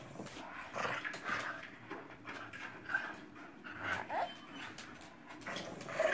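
Small shaggy dog making short whimpering and yipping play noises while it bites, tugs and shakes a plush lobster slipper on a person's foot, with scuffling of the plush fabric in between.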